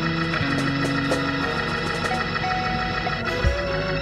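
Organ music playing sustained, held chords, with a low thump about three and a half seconds in.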